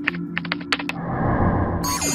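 Sound effects of an animated outro: a steady low electronic hum under a quick run of sharp clicks in the first second, then a whoosh starting near the end.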